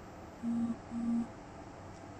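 Two short low hums at one steady pitch, each about a third of a second, in quick succession over quiet room tone.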